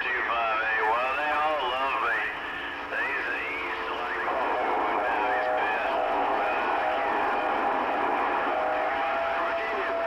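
Other operators' voices coming in over a CB radio speaker, thin and garbled. From about four seconds in, a steady whistle tone sits under the voices.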